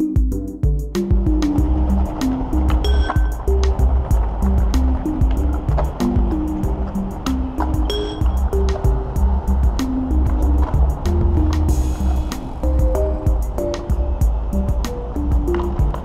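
Background music with a steady beat, stepping bass and melody notes.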